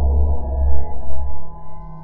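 Closing ambient music: a deep, heavy low drone under several sustained tones, fading away over the last second.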